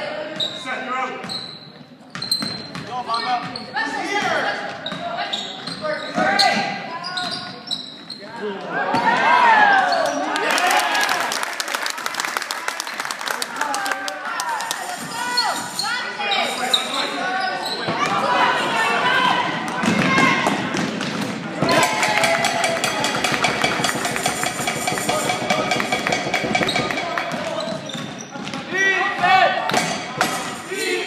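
Basketball game in an echoing gym: many voices calling out over one another, with a basketball bouncing on the hardwood floor.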